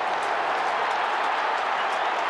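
Large stadium crowd cheering a goal that has just been kicked, a steady, even wash of voices.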